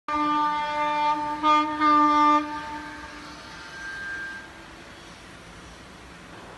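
Horn of a suburban EMU local train sounding a long blast followed by two short blasts, then fading into the quieter rumble of the passing train.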